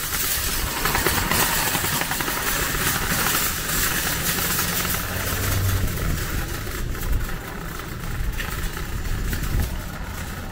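Shopping cart rolling across a paved parking lot, its wheels and wire basket rumbling and rattling continuously, rougher in the first half and a little smoother after about six seconds.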